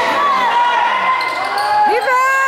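Basketball game in a gym: players and spectators calling out and shouting over the noise of play on the court, with the ball bouncing.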